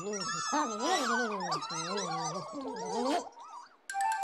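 Wordless babbling chatter of the Pontipine characters, several voices wavering and overlapping, stopping a little after three seconds in.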